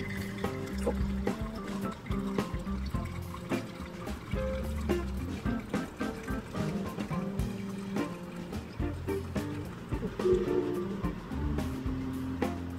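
Background music, with a thin trickle of hot water poured from a gooseneck kettle onto coffee grounds in a paper filter during the first seconds.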